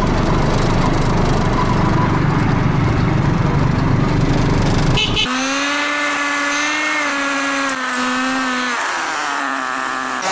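Ride inside a small motorized tricycle taxi: a steady low rumble of the motor and road at first. About five seconds in, after a cut, a high steady motor whine takes over, wavering a little and dropping in pitch near the end.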